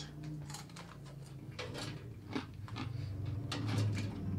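A person chewing a crisp air-fried russet potato fry: scattered soft crunches and mouth clicks over a low steady hum.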